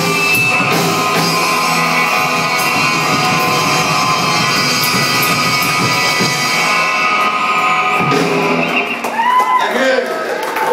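Live rockabilly band (double bass, drum kit and hollow-body electric guitar) playing the closing bars of a song, which stops about nine seconds in, followed by voices calling out.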